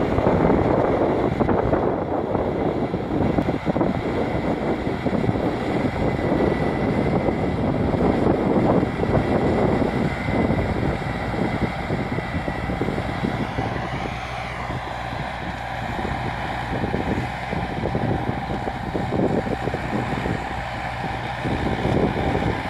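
Tractor running with a Shaktiman 3 m Jumbo rotavator, a continuous loud mechanical noise of engine and machinery, somewhat quieter in the middle of the stretch.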